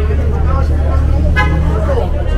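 A steady low rumble from an idling vehicle engine under indistinct chatter of people at an outdoor street market, with one short voice-like call about one and a half seconds in.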